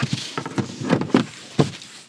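Handling noise from a Honda ZR-V's folded cargo cover being stowed under the boot floor: a series of short knocks and rustles as the cover and the floor panel are pushed into place.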